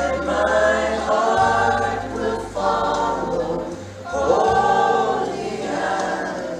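A man and two women singing a slow worship chorus together in harmony, holding long notes, over an accompaniment with sustained low bass notes.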